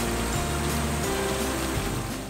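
Background music with held notes and a changing bass line, over the steady rush of a shallow river.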